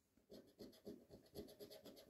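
A coin scratching the coating off a paper scratch-off lottery ticket: faint, quick repeated strokes.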